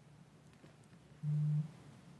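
A short, low electronic beep: one steady tone that starts abruptly a little over a second in and cuts off under half a second later.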